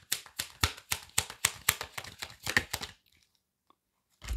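A deck of tarot cards shuffled by hand, cards slapping and flicking from one hand onto the other in a rapid run of light clicks that stops about three seconds in.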